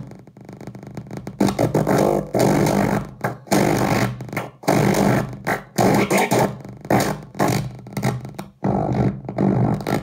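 Circuit-bent Czech-language 'speak and tell' talking toy putting out harsh glitched electronic noise in choppy bursts that start and stop every half second to a second, over a steady buzzing drone. It is quieter for about the first second and a half, then loud.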